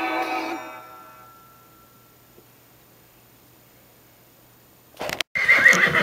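Background music fading out over the first second, a quiet stretch, then about five seconds in a liver chestnut stallion whinnies loudly, a short wavering call.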